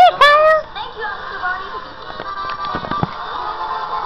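Children's TV show soundtrack played through laptop speakers: a voice for a moment at the start, then the instrumental music of a sing-along song with a few light clicks.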